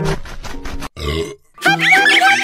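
A rapid run of clicks, then after a brief gap a short burp sound effect about a second in, as the cartoon cat gulps down fried chicken. Children's-style background music plays at the start and comes back near the end.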